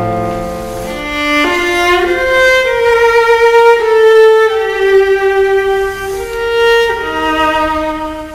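Viola and piano playing contemporary classical chamber music: the piano accompaniment fades out about a second in, leaving the viola alone on a slow line of long held notes that steps downward, rises briefly and drops again near the end.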